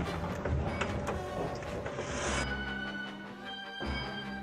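Orchestral film score over mechanical whirring and clattering sound effects. The effects and a hiss stop about two and a half seconds in, leaving sustained orchestral chords.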